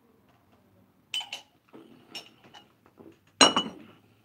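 White ceramic mug clinking against a hard surface: two light clinks a little after a second in, a few softer knocks, then a louder clink and knock near the end as it is set down.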